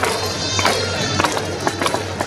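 Stadium cheering music for the batter, with a steady beat of sharp strikes a little under two a second.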